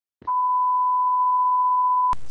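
A steady electronic beep tone at one unchanging pitch, starting about a quarter second in and held without a break.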